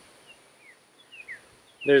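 Faint wild bird calls: a handful of short, falling chirps in quick succession, over a steady high, thin whine in the background.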